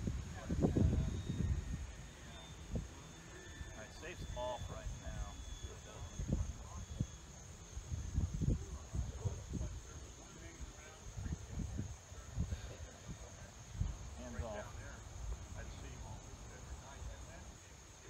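Gusty wind buffeting the microphone in irregular low rumbles, strongest about a second in, over a steady high-pitched chirring of crickets.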